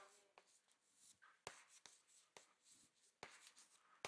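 Very faint chalk on a blackboard: a few light taps and scratches of the chalk as a word is written, otherwise near silence.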